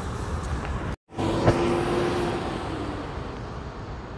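Road traffic noise from cars passing on a multi-lane road. The sound drops out for a moment about a second in, then comes back with a sharp click and a brief steady tone.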